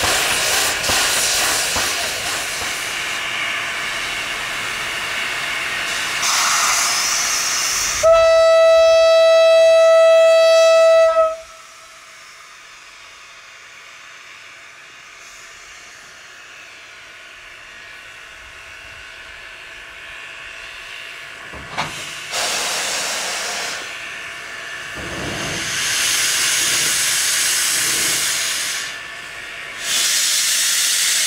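JS class 2-8-2 steam locomotive hissing steadily as it vents steam. About eight seconds in comes one loud, single-pitched whistle blast lasting about three seconds. After a quieter stretch the steam hiss returns in louder surges near the end.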